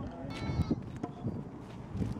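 A single wavering bleat-like animal call, about half a second long, shortly after the start, over wind buffeting the microphone.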